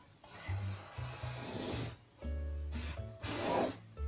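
Background music with a steady low bass line, over two scratchy strokes of a thick-tipped black permanent marker drawn across canvas: one long stroke of nearly two seconds, then a shorter one near the end.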